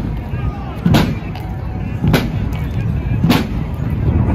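Pipe band bass drum beating a slow marching pulse, three strikes about a second apart, over a steady street rumble.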